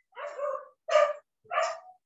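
A dog barking three times, each bark short and separate.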